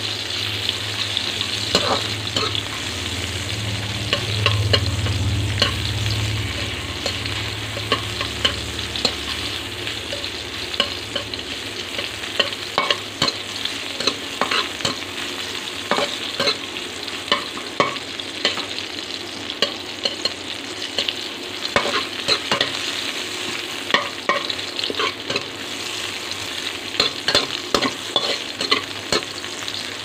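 Sliced onions sizzling in hot oil in a steel pan, stirred with a slotted spatula whose strokes scrape and click against the pan, often several times a second.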